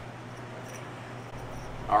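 A steady low hum with faint hiss and no distinct mechanical sounds. A man's voice begins a word at the very end.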